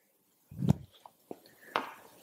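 Footsteps and light handling noises on a wooden floor: a dull thump a little before the first second, then a few light clicks and taps.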